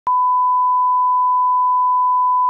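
Steady 1 kHz reference test tone of the kind played over colour bars, starting abruptly with a click just after the start.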